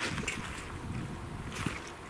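Fendt 936 tractor and CLAAS Quadrant 5300 big square baler working across a straw field, heard as a low rumble with a hissing rush that starts suddenly and a second hissing burst near the end.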